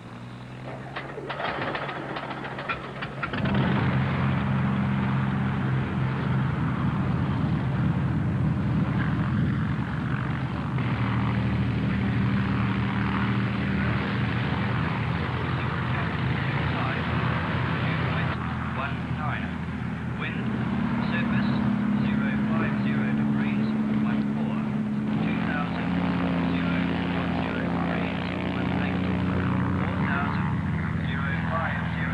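Light aircraft's piston engine and propeller running steadily: a glider tow plane. It grows much louder about three seconds in, and its pitch shifts up and down a little in the second half.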